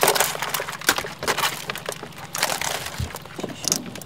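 Live blue crabs being picked through by hand in a wooden crate: an irregular run of hard clicks, cracks and scrapes of shell against shell and against the wood.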